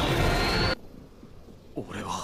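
Anime battle sound effect of a fiery energy blast over the soundtrack music, with a rising whine. It cuts off abruptly under a second in and leaves near quiet, with a short breath or gasp near the end.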